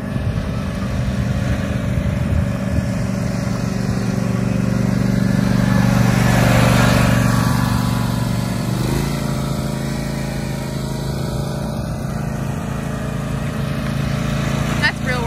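Zero-turn riding lawn mower engine running steadily. It grows louder as the mower passes close by about halfway through, then its note drops a little in pitch and fades slightly.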